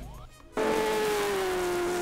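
Faint at first, then about half a second in a Stock Car race car's engine cuts in abruptly at high revs. It holds a steady note that sinks slightly as the car runs down a straight.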